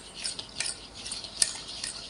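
Wire whisk stirring fast through a thick flour batter in a stainless steel bowl, its wires scraping and clicking against the metal in quick, irregular strokes, with one sharper clink near the middle.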